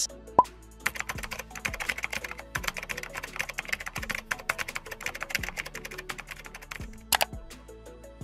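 Rapid computer keyboard typing, a fast run of clicks that thins out near the end, over light background music. A single sharp sound stands out shortly before the end.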